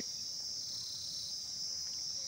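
Steady, high-pitched chirring of insects in the grass.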